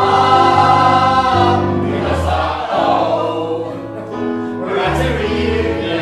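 Mixed ensemble of men's and women's voices singing together in harmony, holding chords that change every second or two, in a live musical-theatre number.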